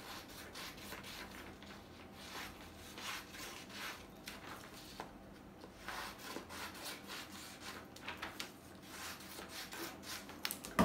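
Scissors cutting through a sheet of paper, a run of short snips.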